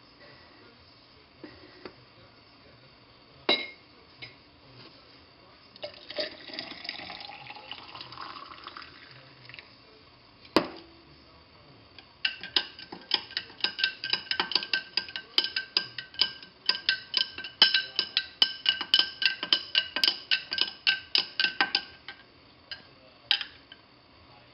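Coffee poured from a French press into a drinking glass, its pitch rising as the glass fills, then a sharp clink. A spoon then stirs the coffee in the glass for about ten seconds, clinking quickly and repeatedly against the glass, which rings with each strike.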